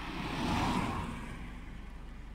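A car passing by: a swell of road and tyre noise that rises and fades within about a second and a half.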